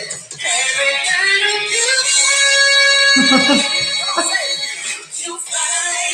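A recorded song plays back, with a woman's lead voice singing over the backing music in long held and sliding notes.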